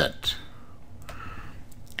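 A few faint clicks of a stylus on a tablet's writing surface as a bracket is drawn, over a low steady hiss.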